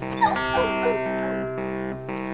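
Background music of sustained chords throughout, with a German Shepherd–Airedale Terrier mix dog whining in a few short falling cries from about a quarter second to a second in.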